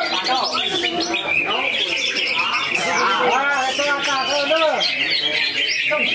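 A dense chorus of caged songbirds chirping and warbling without a break, including the song of a greater green leafbird (cucak hijau), with rising and falling whistled phrases loudest in the second half.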